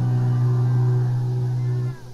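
Live rock band on a 1972 soundboard recording: one low note with rich overtones is held for nearly two seconds, then cuts off near the end, leaving quieter music.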